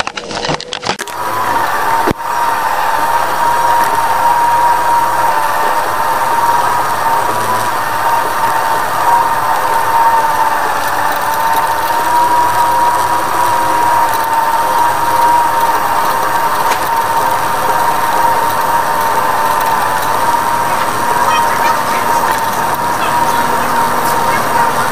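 Shopping cart rolling over a store's concrete floor, a steady rolling noise with a constant high, slightly wavering whine over it. It settles in about a second in, after a few brief knocks.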